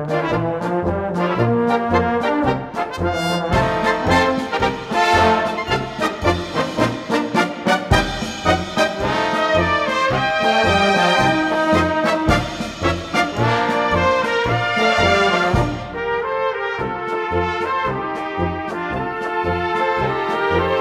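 Bohemian-style brass band (Blasmusik) playing an instrumental passage, with trumpets and trombones carrying the melody over regular bass notes. About four-fifths of the way through the texture thins and gets a little softer.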